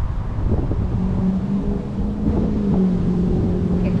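Wind buffeting the microphone in a loud, low rumble, with a steady engine hum joining about a second in.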